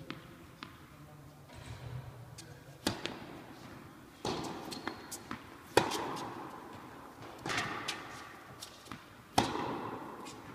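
Tennis rally on an indoor court: sharp pops of rackets hitting the ball and the ball bouncing, about one every second and a half, each ringing on in the hall. The loudest strokes are the nearer player's, about six and nine and a half seconds in.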